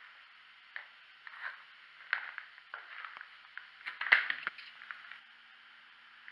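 Footsteps crunching on rubble and debris, a few irregular steps with the loudest crunch a little after four seconds in.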